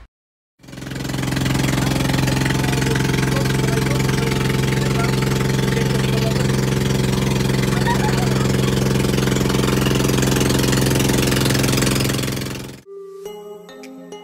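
Tour boat's engine running steadily under way, a low even hum with a rush of wind and water over it. Near the end it stops suddenly and background music takes over.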